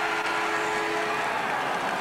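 Crowd cheering as a steady siren tone sounds and then cuts off just over a second in: the final siren ending the match.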